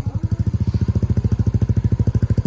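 Motorcycle engine running at low road speed, with a fast, even exhaust beat.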